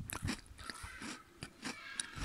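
Close-up crunching and chewing of a chocolate-coated wafer bar: a run of short, crisp crunches a few times a second.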